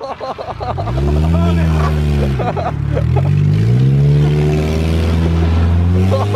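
Compact car's engine revving, its pitch climbing and falling back twice and then held high, with people laughing over it near the start.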